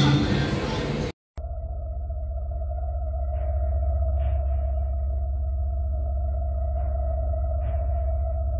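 For about a second, a busy mix of music and voices, then an abrupt cut to a steady, eerie ambient drone: a deep pulsing hum under a single held tone, with a few faint short sounds over it.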